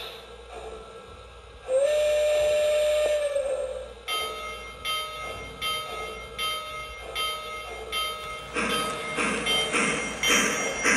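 O gauge model steam locomotive's onboard sound system: a steam whistle blown once for about two seconds, sliding up at the start and then held. Then the locomotive bell rings about twice a second, and near the end rhythmic steam chuffing begins as the train starts to move off.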